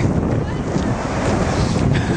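Wind blowing across the microphone, a steady rushing noise heaviest in the low end.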